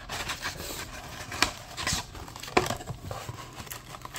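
Cardboard flaps of a trading-card box being pulled open and handled: rubbing and scraping of card stock with a few sharp clicks.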